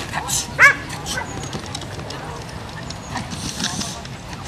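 A dog barks once, loud and short, about half a second in.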